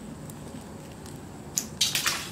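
Quiet background, then two short splashy sounds close together near the end: a dead fish pushed through a storm-drain grate dropping into the water below.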